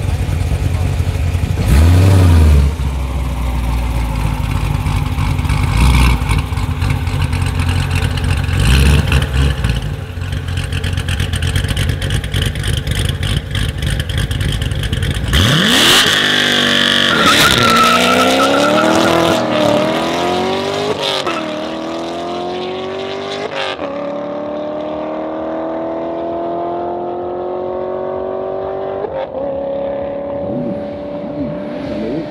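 Corvette C7 Stingray's 6.2-litre V8 rumbling at the start line with three throttle blips, then launching about halfway through alongside a Mercedes-AMG E63 S estate. The engine notes rise in pitch through four upshifts and grow fainter as the cars accelerate away down the strip.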